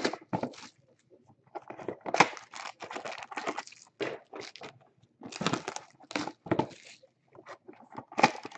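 Plastic shrink-wrap crinkling and tearing in irregular bursts as sealed trading-card boxes are unwrapped and handled.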